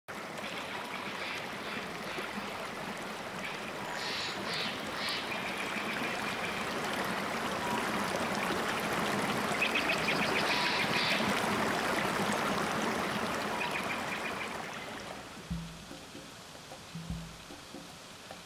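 Stream water rushing steadily over rocks, with some faint higher chirps above it; the rush fades out in the last few seconds and a few deep drum hits of the intro music come in.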